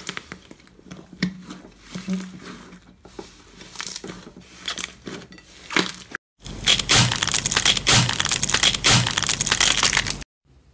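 Slime being squeezed, pressed and pulled apart by hand, with irregular sticky crackles and squelches. After a brief break about six seconds in, a denser, louder run of crackling and popping follows.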